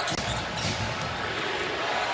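Basketball being dribbled on a hardwood court, its bounces heard over steady arena crowd noise.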